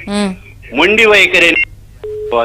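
Speech: a voice heard over a telephone line, in two short phrases.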